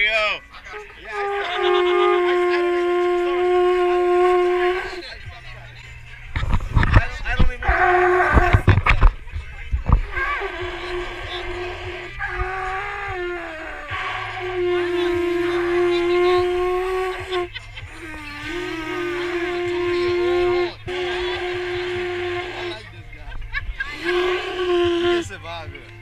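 Conch shell trumpet blown in about six long blasts on one steady note with a buzzy, horn-like tone, some notes wavering or breaking at their ends. About six to ten seconds in, wind or handling noise rumbles on the microphone under the blasts.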